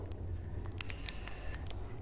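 A person hissing a drawn-out "sss" like a snake for about a second, starting a little under a second in, with a few faint clicks.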